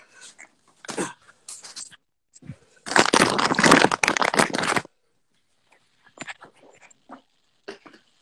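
Handling noise from a smartphone being held and turned: fingers rubbing and knocking on the phone close to its microphone. It comes as scattered crackles, with one dense rustling stretch of about two seconds in the middle.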